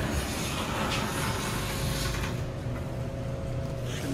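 Elevator car entered from a parking garage: the garage's even background noise falls away about two seconds in and a steady hum is left as the centre-opening doors slide shut.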